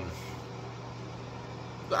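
A steady low background hum in the room between words, with one spoken word right at the end.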